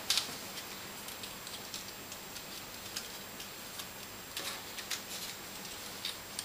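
Thin card pieces of a papercraft sliceform model being slotted together by hand: a few soft, irregular clicks and taps, with a short rustle about two-thirds of the way in.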